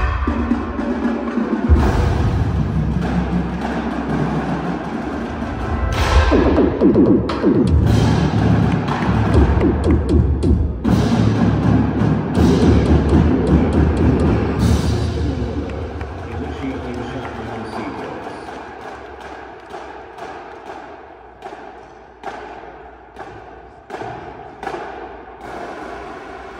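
A high school indoor percussion ensemble playing live, with marimbas and vibraphones over drums, echoing in a gymnasium. The playing is loud and dense for the first half or so, then thins and grows quieter, ending in separate struck notes that each ring out and fade.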